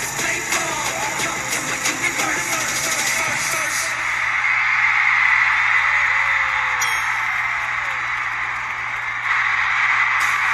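Live pop song with singing and a driving beat that stops about four seconds in, followed by a large stadium crowd cheering and screaming, a little louder, to the end.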